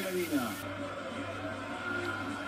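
Speech only: a man's voice tails off in the first half-second, then faint talk over a steady low hum, most likely the match commentary from the television.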